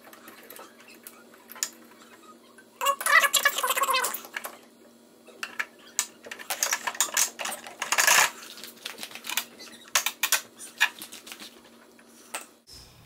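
Irregular metallic clicks and clinks of an adjustable wrench working a snowblower engine's oil drain plug as it is screwed back in and tightened, with a denser clatter about three seconds in.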